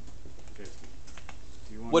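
A few light clicks and taps over steady room noise, with faint voices in the background; a man's voice starts just at the end.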